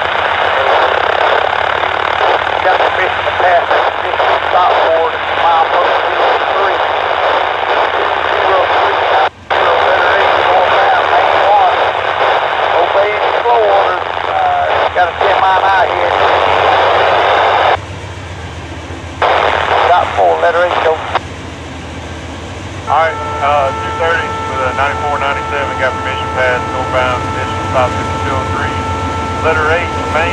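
Scanner radio chatter, thin and garbled, for most of the first two-thirds. Then, with about seven seconds to go, an approaching Norfolk Southern diesel locomotive sounds its multi-chime air horn in one long held chord, with the low engine rumble building beneath it.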